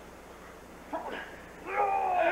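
A short whimpering cry about a second in, then a drawn-out, high, wavering whine that begins near the end and grows louder.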